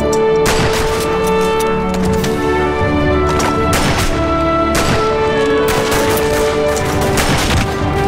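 Dramatic film score with sustained chords, and rifle shots cracking over it at irregular intervals, about one a second.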